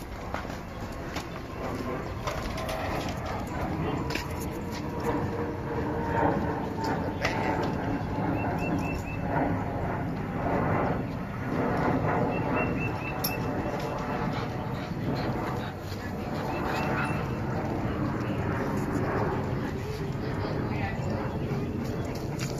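Outdoor ambience: birds calling over faint, indistinct voices, with short chirps standing out about nine and thirteen seconds in.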